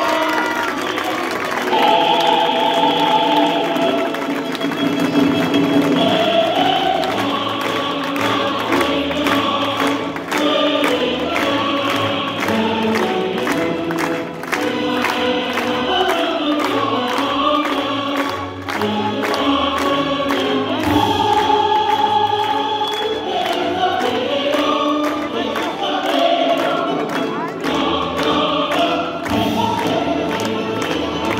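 Music with a choir singing, held and gliding notes in several voices, loud and unbroken.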